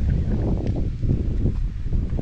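Wind rumbling on an action camera's microphone while walking, with irregular steps and handling knocks a few times a second.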